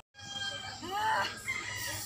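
A rooster crowing once, about a second in.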